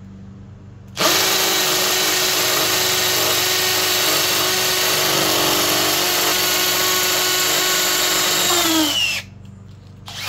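Milwaukee M12 Fuel 2504 cordless hammer drill in hammer mode boring a 3/8-inch hole into a concrete block. It starts about a second in, runs at a steady pitch for about eight seconds, then winds down in pitch and stops.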